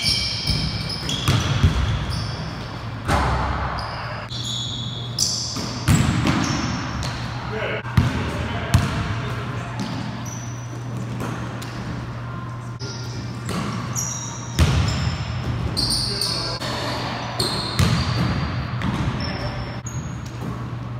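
Pickup basketball on a hardwood gym floor: the ball bouncing and thudding off the floor, with sneakers squeaking sharply as players cut. Players' voices and a steady low hum fill the echoing gym.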